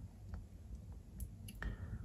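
Faint handling noise from a handheld camera: a low rumble with a few small clicks, the clearest a little past the middle.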